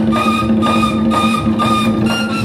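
Live church worship band playing an instrumental passage between sung verses: held chords over a steady percussion beat of about two strokes a second.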